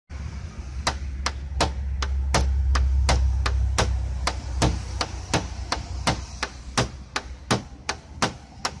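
A plastic disposable lighter scraped back and forth against the painted car body in a scratch test of the paint coating. It gives an even run of sharp clicks, about three a second, over a low rumble of wind on the microphone.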